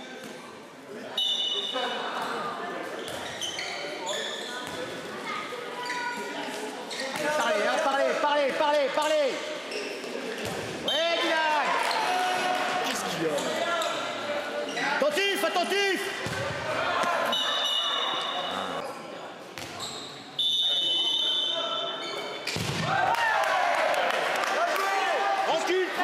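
A handball bouncing repeatedly on a wooden sports-hall floor amid players' shouting voices, all echoing in the large hall.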